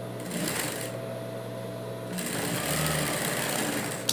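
Straight-stitch sewing machine with its motor humming, a short burst of stitching about half a second in, then stitching steadily from about two seconds in to the end.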